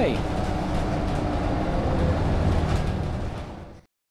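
Interior of a moving bus: steady engine and road noise rumbling in the cabin. It fades out near the end and then cuts off abruptly to silence.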